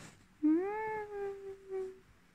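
Boston terrier giving one long whine that rises in pitch, then holds steady for over a second, with a short second note near the end. The dog has just woken from a dream.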